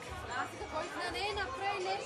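Chatter: several people talking at once at close range, voices overlapping.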